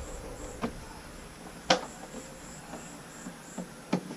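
A few sharp clicks and taps of a screwdriver on the plastic battery-box cover of a Honda BeAT scooter's floorboard as it is screwed back on, the loudest just under two seconds in. A high insect chirping repeats in the background.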